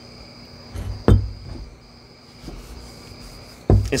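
Steady high-pitched insect trilling, like crickets, runs in the background. A sharp knock comes about a second in and a dull thump near the end, made by the glass swing-top beer bottle as it is handled.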